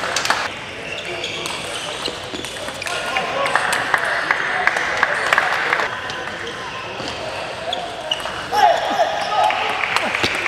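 Table tennis ball clicking off the bats, the table and the floor, a string of short sharp ticks, with voices in the hall behind them.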